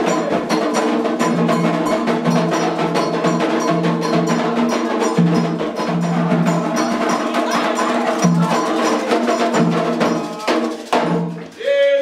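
Candomblé ceremonial music: hand drums and a struck metal bell keep a fast, dense rhythm, with voices singing over it. The drumming breaks off briefly near the end.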